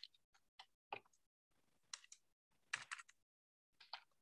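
Faint, irregular clicks of computer keys being typed, about five over a few seconds, with near silence between them.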